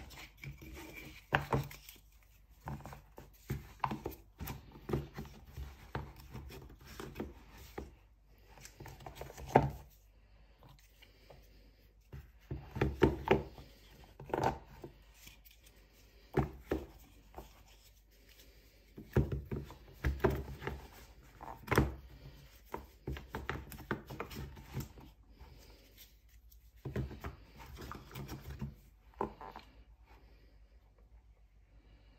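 Small cardboard board books being handled, rubbed together and set down into a cardboard box tray: irregular taps, knocks and scrapes that come in clusters with short pauses between.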